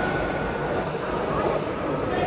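Steady whirring drone with indistinct chatter of spectators, echoing in a large indoor sports hall.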